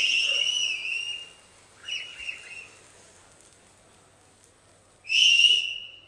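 Shrill human whistles, the kind fans give at a stage event: a long whistle at the start, a short wavering one about two seconds in, and another near the end.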